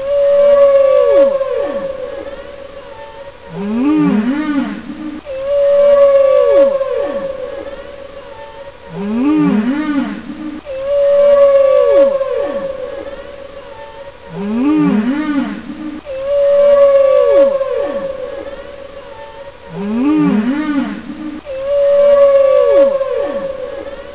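A looped soundtrack of whale-song-like calls: a long held moan with falling sweeps, then low rising-and-falling cries. The same phrase repeats about every five seconds, swelling at each start and fading away.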